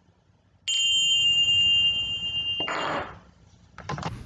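Tingsha cymbals struck together once, giving a bright ring of two steady high tones that lasts about two seconds and cuts off suddenly, followed by a short rustling noise. The chime marks the opening of the service.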